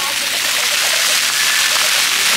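Fountain jets of a splash-pad water play area spraying, a steady rush of falling water, with faint voices in the background.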